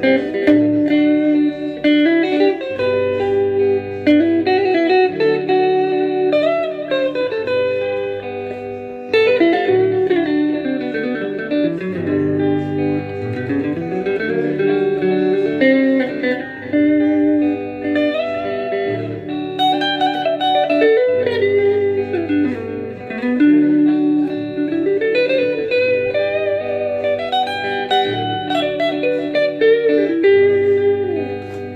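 Guitar playing a freestyle lead ('tenor') line over a repeating five-one chord progression, with frequent slides between notes and low bass notes underneath. The phrases land on so when the chord goes to five and on mi when it returns to one.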